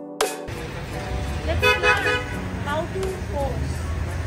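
Background music cuts out about half a second in, giving way to street sound: a steady low traffic rumble with voices over it.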